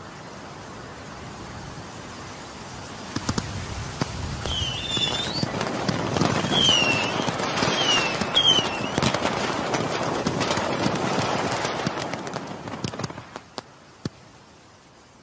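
Fireworks: a few sharp bangs about three seconds in, then a dense crackle with several short whistles that builds to a peak and fades away near the end.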